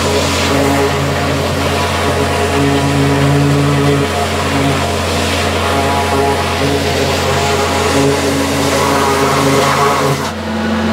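Vacuum excavation truck running steadily: a loud, continuous engine drone with a constant low hum, its tone swelling and easing slightly.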